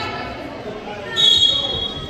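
A single shrill whistle blast about a second in, one steady high note lasting under a second, over gym chatter.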